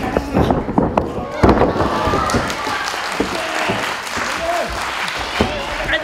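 Pro-wrestling ring: quick thumps of feet running across the canvas, then a heavy thud of a body hitting the ring mat about a second and a half in, with smaller knocks later. Voices shout over the action.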